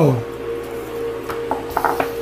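Tarot cards being dealt and laid down on a cloth-covered table, with a few short soft clicks and rustles about one and a half seconds in, over a steady faint tone.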